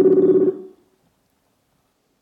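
Steady buzzing electronic call tone from the video-call software as the call reconnects, cutting off abruptly about half a second in.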